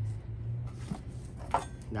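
A kitchen knife and a dragon fruit being handled on a cutting board, with one soft knock about a second in, over a steady low hum.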